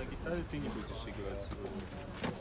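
Indistinct talking and murmuring of several people at once; no music is playing.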